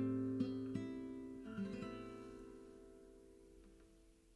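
Nylon-string classical guitar playing the closing notes of a song: a few plucked notes in the first second and a half, then the final chord ringing out and fading away.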